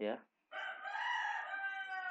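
An animal's single long drawn-out call, starting about half a second in and lasting nearly two seconds, fairly loud in the background.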